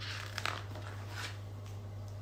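A picture book's page being turned: a soft rustle of paper with a light flick about half a second in.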